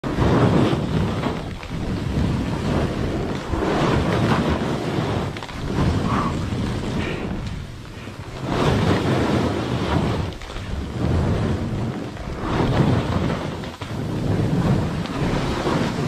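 Snowboard sliding and scraping down a snow couloir, the rush swelling and fading about every two seconds as the rider turns, with wind buffeting the microphone.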